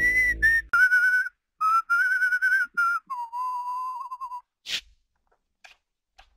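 A person whistling a short tune in several phrases that step down in pitch, ending on a longer wavering low note. A single sharp click follows near the end.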